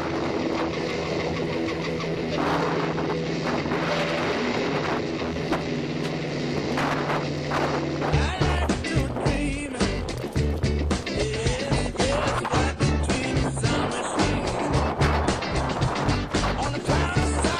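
A steady motor drone with wind noise on the microphone, from the speedboat towing the parasail. About halfway through it gives way abruptly to music with a heavy regular bass beat.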